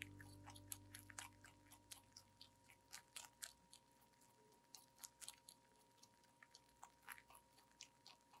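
A rabbit chewing and crunching fresh leafy greens close to the microphone: faint, quick, crisp bites coming irregularly, several a second. A held musical sound fades out over the first two seconds.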